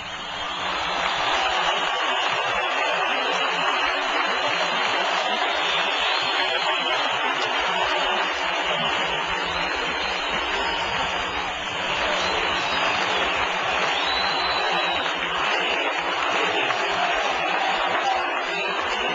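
Large crowd cheering and applauding, a loud, steady wash of noise that swells up over the first second or two and holds without a break.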